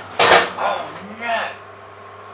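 A man's short wordless exclamations, the first and loudest just after the start, the second about a second in, each bending up and down in pitch.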